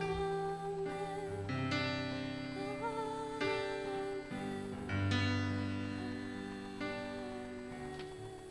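Live worship band playing the slow, soft close of a song: sustained chords with deep bass notes, changing every second or two, growing quieter toward the end.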